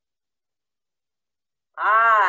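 Silence for most of the time, then near the end a woman's short wordless vocal exclamation whose pitch rises and then falls.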